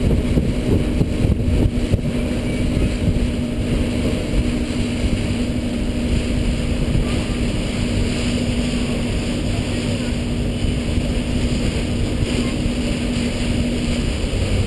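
Passenger ferry's engine running with a steady low drone and rumble while under way, with wind buffeting the microphone. The drone's hum drops out near the end.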